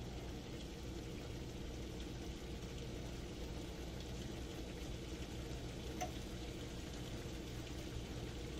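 Low, steady background hum with a faint click about six seconds in.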